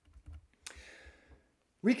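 A laptop key pressed once to advance a presentation slide: a single sharp click followed by a soft breath. There are a few faint low thuds before it, and a man's voice starts speaking near the end.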